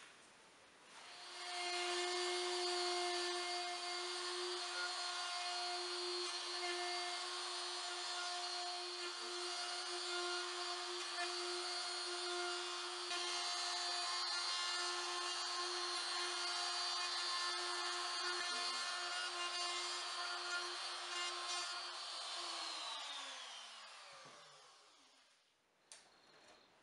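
DeWalt trim router with a straight bit cutting a groove in MDF board, its motor running steadily at a constant pitch. About 22 seconds in it is switched off and the pitch falls as the motor winds down.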